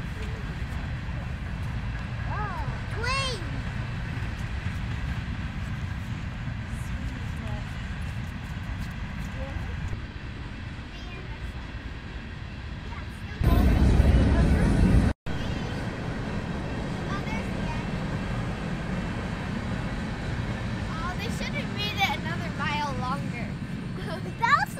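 Steady low outdoor rumble, with a child's high call a few seconds in and children laughing and chattering near the end. About halfway through, a louder rush of noise lasting under two seconds cuts off abruptly.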